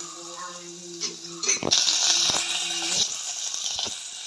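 Hot oil sizzling in a pot during tempering, as dried red chilli and curry leaves go in on top of frying onion pieces. The sizzle swells sharply after a couple of knocks about one and a half seconds in, then eases near the end.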